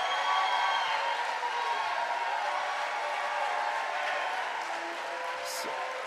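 Congregation cheering and applauding at a steady level, with a held musical chord underneath.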